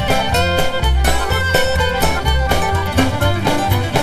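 Instrumental break of a folk song: a string band plays the tune over a steady strummed beat, with no singing.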